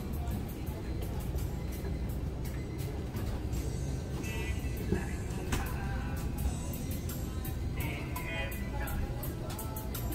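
Mobility scooter's electric drive running steadily as it rolls along, a continuous low rumble, with music playing in the background.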